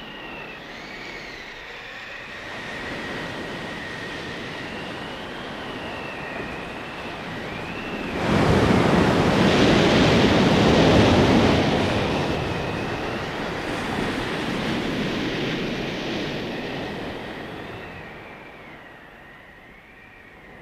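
Sea-storm effects: wind howling in slow rising and falling whistles over a continuous wash of rough sea. About eight seconds in, a heavy surge of breaking surf comes in suddenly and dominates for several seconds, then dies back.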